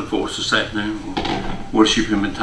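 A man's voice speaking, words not made out.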